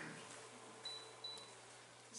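Quiet room with a steady low hum; about a second in, two short, faint, high electronic beeps in quick succession.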